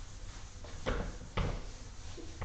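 Whiteboard eraser wiping across a whiteboard, with two short knocks of the eraser against the board about a second in, half a second apart.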